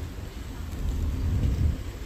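Low, uneven rumble of wind buffeting the microphone, swelling a little past the middle.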